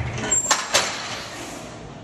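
Smith machine bar being racked: two sharp metal clanks about a quarter second apart, half a second in.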